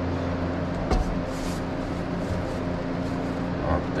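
Steady machine hum with a few low steady tones, with a single sharp knock about a second in.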